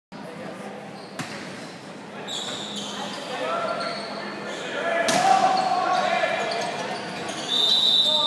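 Volleyball rally in a gymnasium: the ball is struck with a sharp smack about a second in and again about five seconds in, with players' and spectators' shouts echoing through the hall.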